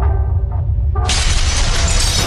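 Animated logo sting: sound-design music over a deep steady bass, with a sudden loud shattering crash about a second in that keeps going as the debris breaks apart.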